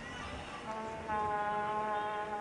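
A horn sounding one long, steady blast at a single pitch. It starts under a second in and grows louder about a second in.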